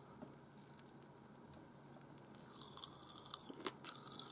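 Strawberry popping candy crackling in a mouth: a faint fizzing crackle with a few sharp little pops, starting a little past halfway after a near-silent first half.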